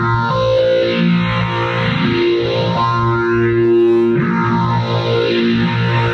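Rhodes Mark I electric piano played through a multi-effects unit. Sustained, effect-processed chords change about every second over a steady low held tone.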